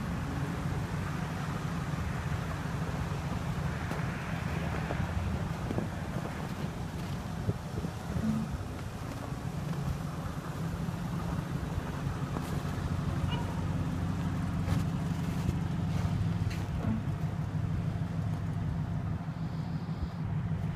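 Ford E350 van's engine idling steadily, a low even hum, with a few light footsteps crunching in snow in the second half.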